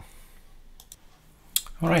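Light clicking of a computer keyboard: two quick clicks about a second in and two more just before a man starts speaking near the end.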